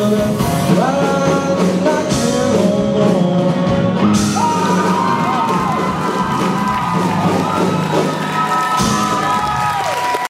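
Live rock band of electric guitars, bass guitar and drum kit playing on after the last sung line, with held, wavering notes over the drums. Cheers and whoops from the audience join in during the second half.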